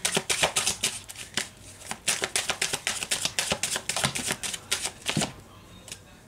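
A deck of oracle cards being shuffled by hand: a rapid run of card clicks and flaps that stops about five seconds in.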